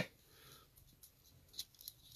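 Near silence: quiet room tone, with two faint short clicks near the end.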